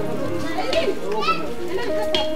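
Several young children's voices chattering over steady background music.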